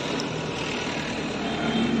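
Steady street traffic noise: a continuous, even hum of vehicles.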